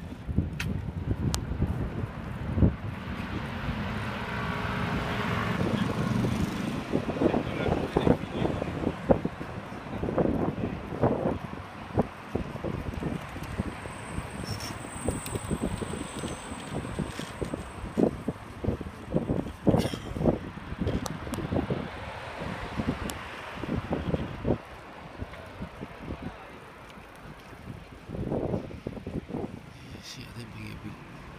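Outdoor promenade ambience heard by someone walking with a phone: their footsteps and handling knocks, passers-by's voices near the start, and traffic from the seafront road. A thin high tone sounds briefly in the middle.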